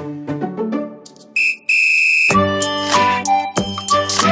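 Music dies away, then two steady high-pitched whistle blasts, a short one and a longer one, and loud dance music with a heavy beat starts straight after.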